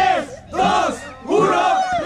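Crowd of people shouting a drawn-out "ooh" together, a reaction to a rap battle line. The shouts rise and fall in pitch and come in two waves.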